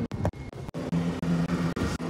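A vehicle driving on a dirt forest road, with uneven road and wind noise and short knocks. Under a second in, this gives way to a steady low hum.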